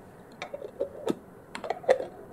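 Cap being fitted and screwed onto a clear bottle of water: a run of light clicks and taps, more of them toward the end.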